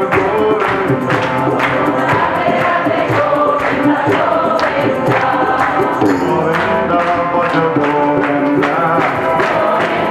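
Live kirtan music: group chanting over harmonium, with tabla and hand cymbals keeping a steady beat.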